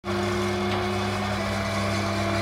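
Small moped engine running at a steady speed on a roller test bench, a constant hum with no change in revs.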